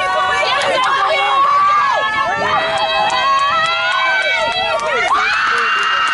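Spectators shouting and screaming over one another, cheering a rugby player's breakaway run, with one long high scream held from about five seconds in.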